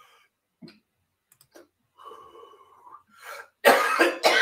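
A person coughing: a loud, harsh cough near the end, after a softer breathy burst just before it.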